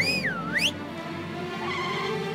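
A whistle, dipping in pitch and then sweeping sharply up, lasting under a second at the start, over cartoon background music.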